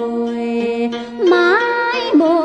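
Music: a Vietnamese song, one voice holding a long note and then gliding up to a higher note about a second and a half in.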